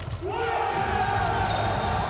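A man's long, loud shout of celebration after scoring a handball goal, rising at first and then held for well over a second.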